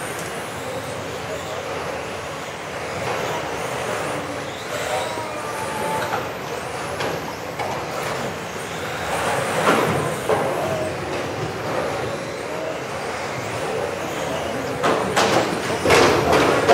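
Electric RC touring cars racing in a large hall, their high motor whines rising and falling as they accelerate and brake. A few sharper knocks come about ten and fifteen seconds in, over a steady echoing hall background.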